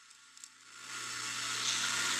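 Near silence, then a rushing noise with a faint low hum that swells steadily louder from about half a second in, a sound effect in the animated episode's soundtrack.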